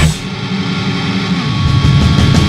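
A heavy rock song breaks down: the full band cuts out just after the start, leaving a held, droning chord with noise that rings on for about two seconds. The full band crashes back in at the end.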